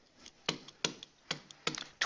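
Pen stylus tapping on a digital writing surface as characters are handwritten: about five short, sharp, quiet clicks, one every third of a second or so.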